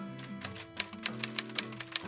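Background music with about eight sharp typewriter key clicks over a second and a half, a typing sound effect as title text appears.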